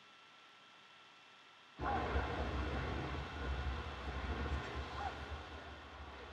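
Near silence, then about two seconds in a steady low rumble with a hiss of noise starts suddenly and eases off slightly toward the end.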